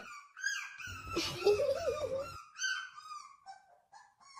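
A puppy whining in a string of short, high-pitched whimpers that slide up and down in pitch, with a lower voice-like sound in the middle lasting over a second.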